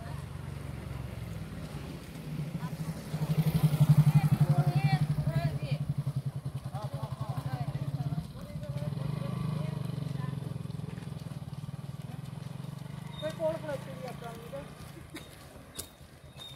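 A motorcycle engine running at low speed close by, a steady low pulsing drone that is loudest a few seconds in and dips briefly around the middle, with women's voices talking over it.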